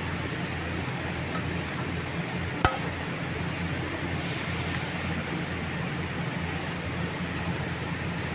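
A single sharp metallic clink with a brief ring, about two and a half seconds in, as a small steel valve part or tool strikes the engine cylinder head during valve fitting. It sounds over a steady background hum.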